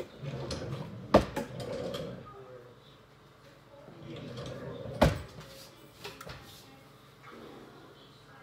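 Kitchen handling sounds at an oven: two sharp knocks, one about a second in and one about five seconds in, with low rustling between them, as the oven door is opened to take out the meatloaf.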